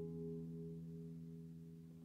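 Acoustic guitar chord ringing out and slowly fading, with no new strum.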